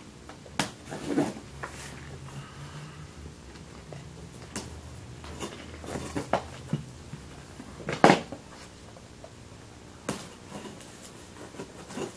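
A cardboard box sealed with double packing tape being cut and pulled open by hand: scattered short scrapes, rips and knocks of tape and cardboard, the loudest about eight seconds in.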